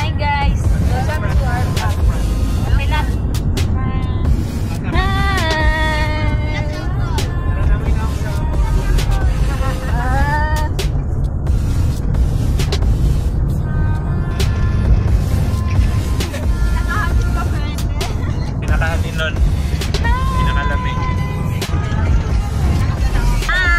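Steady low rumble of a moving vehicle heard from inside its cabin, with voices and music over it.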